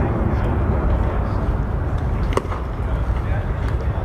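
Open-air ballpark background: a steady low rumble with faint voices, and one sharp knock about two and a half seconds in.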